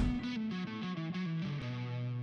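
Closing music: a guitar plays a short run of notes stepping down in pitch, then holds a final low note from near the end.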